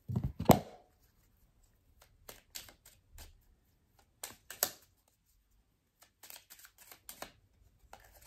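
A deck of oracle cards being shuffled and handled, cards flicking and tapping in scattered soft clicks, with the loudest knock about half a second in.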